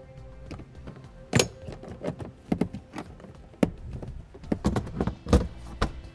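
Hard plastic cargo-area trays, tools and floor panel being put back into place by hand: a series of irregular knocks and clicks, the biggest a few seconds apart, over faint background music.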